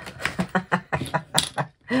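Small hard plastic tools and pieces clicking and tapping on a hard desktop as they are picked up and dropped back into a toolkit pouch: a run of quick, irregular light clicks.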